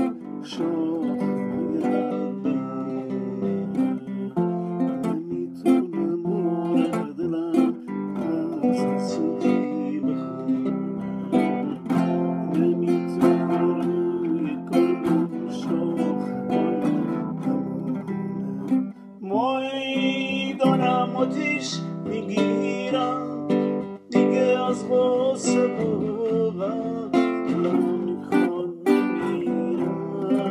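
Nylon-string classical guitar played fingerstyle: a continuous run of plucked, arpeggiated chords and single notes.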